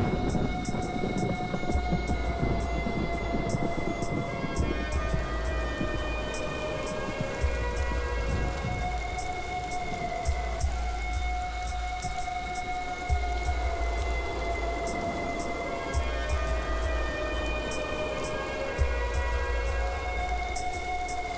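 Steady rain falling, under a film score of long held tones, with low rumbles recurring every two to three seconds.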